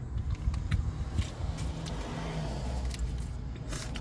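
Someone rummaging in a handbag: rustling with small clicks and jingles as things inside are shifted about, over a low steady rumble.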